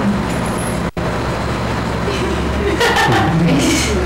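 A steady low hum runs underneath, with a brief cut in the sound about a second in. A man's voice, laughing, comes in during the second half.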